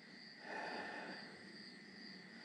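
Quiet pause in a small workshop: faint steady high-pitched tones over low room tone, with a soft, brief noise that swells about half a second in and fades out a little after a second.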